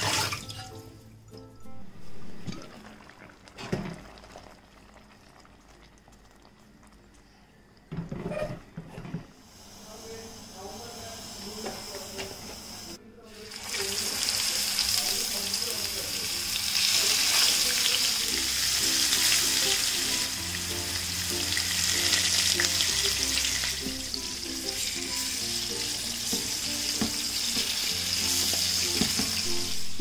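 Tap water running into a steel sink for the first seconds. From about halfway, masala-coated fish steaks sizzle in hot oil in a frying pan, a steady hiss that lasts to the end, over soft background music.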